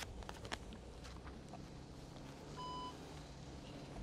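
A single short electronic beep, a steady tone lasting about a third of a second, about two-thirds of the way in, over a faint low rumble.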